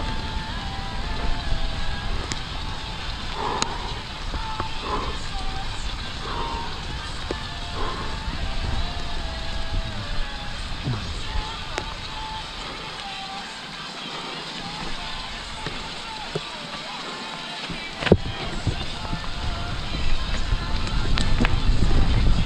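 Mountain bike riding fast down a damp dirt trail: a steady rumble of tyres and the rattle of the bike, with wind on the camera microphone. The low rumble eases for a few seconds past the middle, and a single sharp knock stands out near the end.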